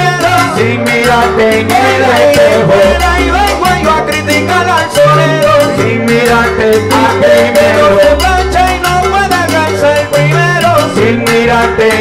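Salsa band playing an instrumental passage: a bass line repeating low notes under held melodic lines and steady percussion.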